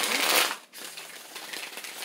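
A deck of tarot cards riffle-shuffled by hand: a loud rapid flutter of cards interleaving in the first half-second, then a softer flutter running on as the two halves are bridged back together.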